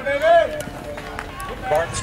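People's voices: one loud call rising and falling at the start, then quieter talk near the end.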